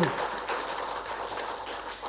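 Audience applauding, a patter of many hands clapping that fades gradually.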